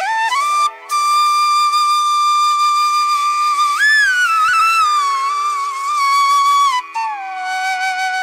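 Background music: a solo flute playing a slow melody of long held notes joined by sliding changes in pitch.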